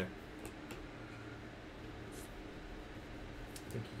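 Faint steady room noise with a low hum and a few soft clicks; a man's voice starts again near the end.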